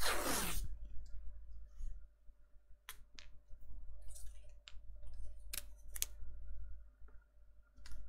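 Washi tape pulled off its roll in one short pull near the start, then scattered light clicks and taps as the strip is handled and pressed onto a hard desktop.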